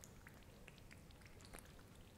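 Near silence with faint, scattered tiny pops and crackles from the surface of fermenting soy sauce mash (moromi).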